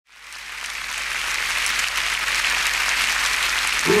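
Large audience applauding, fading in from silence over the first second. A man's singing voice comes in right at the end.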